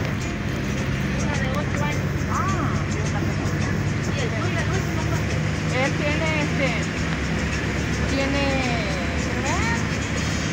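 Steady engine and road noise of a moving car, with a voice rising and falling over it now and then.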